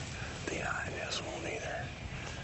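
A man speaking in a hushed, whispered voice over a steady low rumble.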